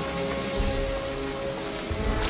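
Film soundtrack of a First World War battle scene: steady rain noise under sustained low music notes.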